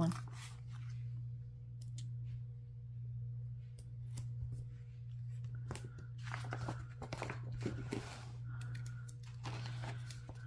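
Paper sticker sheets and planner pages being handled: a sticker peeled off its backing and pressed down, then soft paper rustles and crinkles, busiest in the second half, over a steady low hum.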